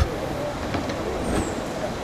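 Steady rushing noise of an airport apron, with no clear pitch, running evenly and cutting off abruptly.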